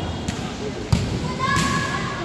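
Futsal ball struck on a wooden indoor court, a single sharp thud about a second in, followed by a high-pitched shouted call from a player.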